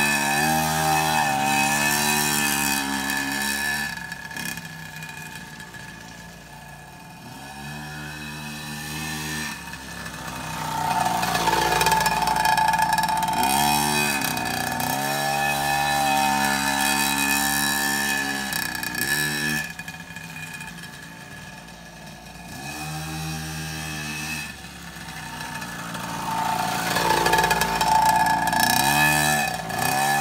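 KTM 50 mini motocross bike's small two-stroke engine, revved up and eased off again and again as it laps, its note rising and falling and growing louder and fainter as the bike comes near and goes away.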